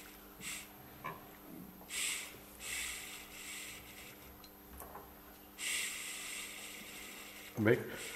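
Small electric mini drill fitted with a 0.5 mm bit, whirring in short bursts and then running steadily for the last couple of seconds. It has no speed regulator, so its speed is held down by pressing a finger on it.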